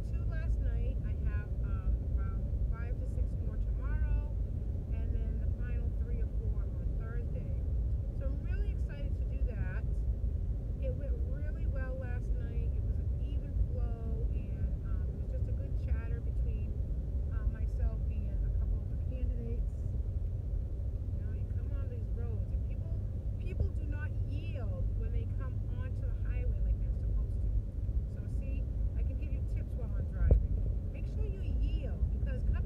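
Steady low road and engine rumble inside a moving car's cabin, with a woman talking over it throughout.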